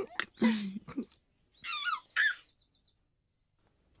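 Birds chirping: high warbling trills and a couple of falling whistled calls, which fade out about three seconds in. A few short voice sounds come at the start.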